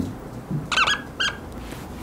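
A felt-tip marker squeaking on a whiteboard as words are written, two short high-pitched squeaks near the middle.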